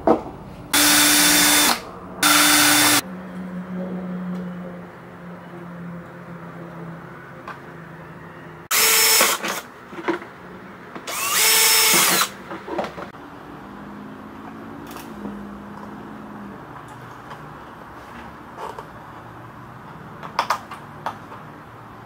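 Cordless drill with a 3/16-inch bit running in four short bursts, drilling the four clip holes through an A-pillar gauge mount. Two bursts come close together near the start and two more about halfway through, each a steady motor whine, with quiet handling of the part in between.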